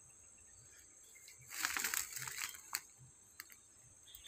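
Plants rustling and crackling for about a second, as they are pushed through or trodden, with a sharp snap just after and a few faint clicks. Steady high insect chirring runs underneath.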